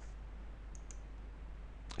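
A few faint computer-keyboard clicks about three-quarters of a second in, over a low steady hum, as a new chart symbol is typed.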